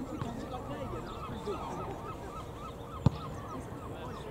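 A steady chorus of many short honking bird calls. About three seconds in, a single sharp thump of a football being kicked.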